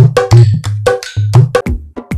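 A dholak playing a fast theka groove: sharp ringing slaps on the treble head over deep bass strokes whose pitch is bent up and down on the bass head. Near the end the drumming stops and different music with a drum beat begins.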